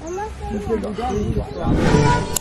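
A young man's wordless vocal noises: drawn-out cries that waver up and down in pitch, with a swell of rushing noise near the end.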